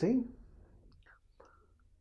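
A man's speech trails off about half a second in, followed by a near-silent pause with a few faint mouth clicks and breath sounds.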